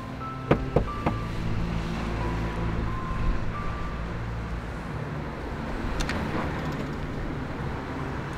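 Three quick knuckle knocks on a front door about half a second in, over a steady low rumble, with a single sharp click near six seconds.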